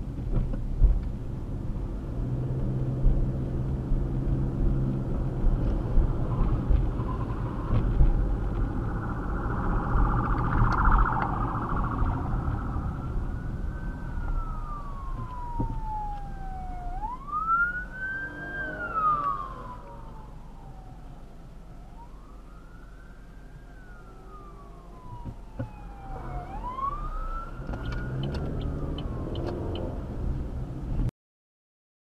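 Car road and engine noise heard from inside the cabin. Then, a little before halfway, an emergency-vehicle siren starts wailing, sweeping slowly up and down in pitch and repeating for the rest of the stretch.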